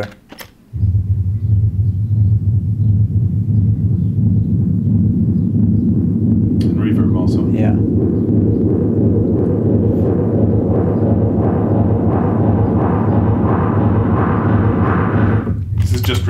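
Synthesizer soundtrack playing back: a deep, steady synth bass with a fast pulsing texture, joined after several seconds by a rhythmic pink-noise percussion layer at about three hits a second whose resonant filter sweeps open, so the hits brighten steadily toward the end.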